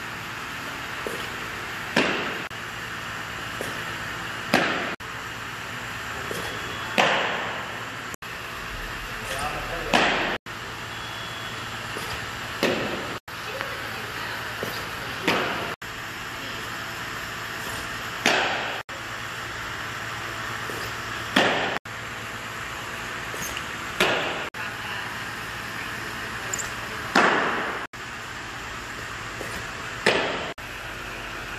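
Fastpitch softball pitches smacking into a catcher's mitt: about ten sharp pops, roughly one every three seconds, each echoing in a large indoor hall.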